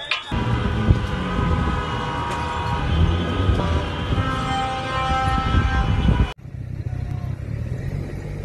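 Loud low outdoor rumble with several overlapping sustained tones of different pitches above it. It cuts off abruptly about six seconds in, and a quieter rumble follows.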